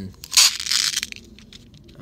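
A pin art toy's green plastic pins sliding and clattering together in a short crunchy rush as it is turned over in the hands, followed by a few light clicks.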